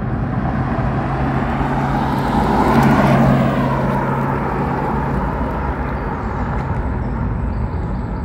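Porsche Taycan electric car driving past on a tarmac road: tyre noise builds to a peak about three seconds in and then fades as the car moves away. A faint whine drops in pitch as it passes.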